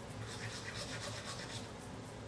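A manual toothbrush scrubbing teeth, with quick back-and-forth scratchy strokes that fade out near the end.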